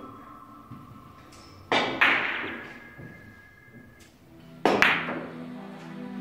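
A Russian billiards shot: the cue strikes the cue ball and the large, hard balls clack together. There are two sharp clicks about two seconds in and two more near five seconds, each ringing briefly in the hall.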